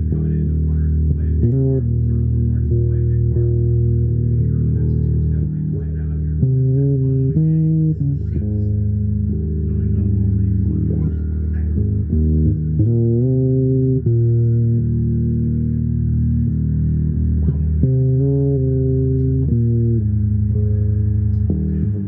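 Fretless electric bass played fingerstyle in a slow improvised line: held notes, with smooth slides in pitch between several of them.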